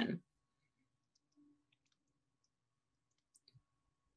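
A voice breaks off right at the start, then near silence with a faint hum and a few faint clicks about three and a half seconds in.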